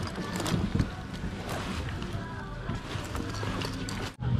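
Indoor shop ambience: faint background music and distant voices over a steady low hum, with scattered light clicks.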